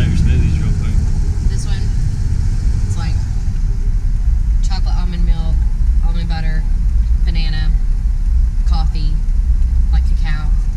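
Steady low rumble of a car heard from inside its cabin, with a few short phrases of speech over it from about five seconds in.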